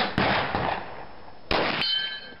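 Two pistol shots about 1.3 s apart, the second followed by the ringing of a hit steel target.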